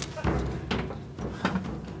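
A few sharp knocks and thumps, about four in two seconds, as contestants step into and sit down in glass game-show pods.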